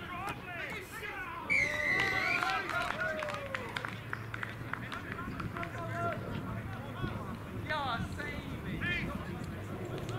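Rugby players shouting and calling to each other on the field. About a second and a half in comes a single steady whistle blast lasting about a second, typical of a referee's whistle stopping play.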